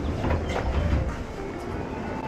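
Commuter train car interior: a steady low rumble with a few short clicks about half a second to a second in.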